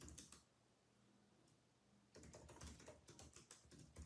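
Faint typing on a computer keyboard: a few keystrokes right at the start, then a quicker run of keystrokes through the second half.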